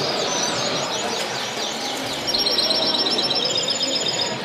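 Caged canaries singing: fast rolling trills of high repeated notes, with a longer, louder trill in the second half.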